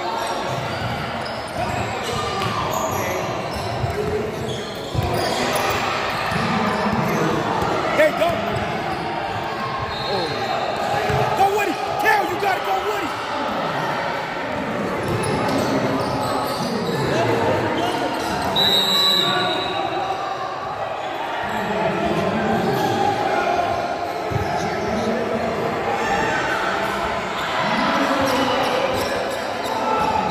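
Basketball being dribbled and bouncing on a hardwood gym floor, amid indistinct voices echoing in a large hall. Two brief high squeaks come about ten and nineteen seconds in.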